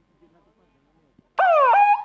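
A loud, high-pitched drawn-out call starting abruptly about a second and a half in, sliding down in pitch and then held on one note.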